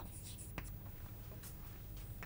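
Chalk writing on a chalkboard: faint scratching strokes with a couple of light taps, the sound of an equation being written out.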